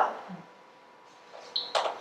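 A short pause in a woman's talk in a small room: her last word trails off, then quiet room tone, then a breath and small sounds before she speaks again.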